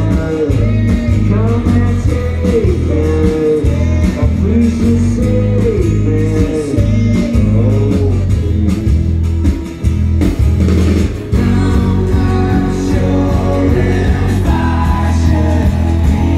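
Live band playing a song through the PA: acoustic and electric guitars over drums, with a sung vocal.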